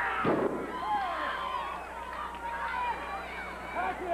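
A wrestler's body slamming onto the wrestling ring's canvas and boards: one heavy thud about a quarter second in. Crowd voices shouting follow.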